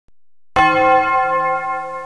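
A bell struck once about half a second in, ringing on with several steady tones that slowly fade.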